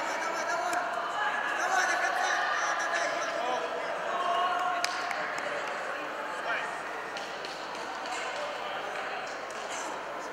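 Several voices shouting and talking over one another, with a few short knocks, one sharp one about five seconds in.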